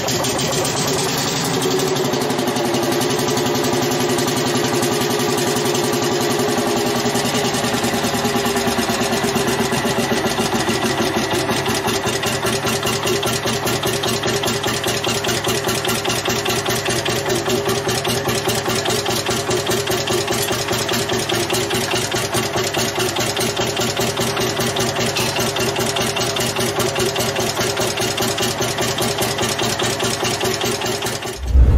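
45 PS Lanz Bulldog tractor's single-cylinder, two-stroke hot-bulb engine running at a slow idle, with its characteristic even pop-pop firing beat.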